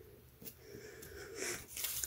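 Faint handling sounds of tweezers pressing a sticker onto a paper planner page, with a soft click about half a second in. A quiet breath-like sound builds near the end.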